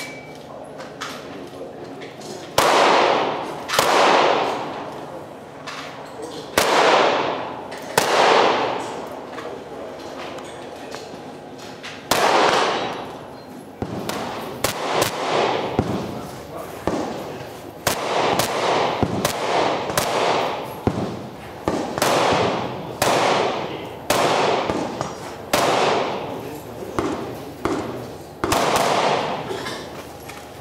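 Rifle shots fired at irregular intervals, some singly and some in quick pairs and strings, about two dozen in all. Each crack carries a long echo that fades over about a second.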